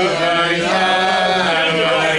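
A group of men singing a slow, wordless Hasidic niggun, holding long notes that glide from pitch to pitch.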